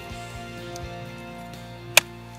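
Background music, with one sharp chop near the end: a steel machete blade striking a wooden tree stump.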